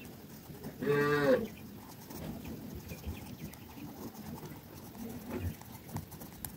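A single short, low moo-like call about a second in, lasting about half a second. Faint pencil scratching on paper can be heard in the quieter stretches around it.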